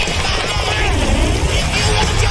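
Film score playing loudly over a heavy low rumble of sound effects, with a swooping glide in pitch about halfway through.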